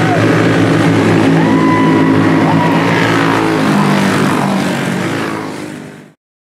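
Several single-cylinder Clone-engine dirt-track go-karts running together around the track in a steady drone, fading out near the end.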